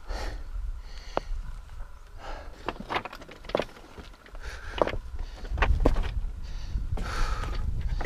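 Heavy panting breaths of a person straining under the load of a mountain bike carried up a steep rocky slope, coming about every second. Scattered sharp clicks and knocks sound through it, over a low wind rumble on the microphone.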